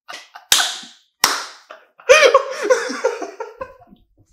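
Two sharp hand smacks, a little under a second apart, then a man laughing hard in loud, rising and falling bursts.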